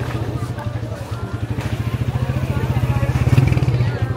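A low, rapidly throbbing engine running close by, swelling to its loudest about three and a half seconds in, under the chatter of a strolling crowd.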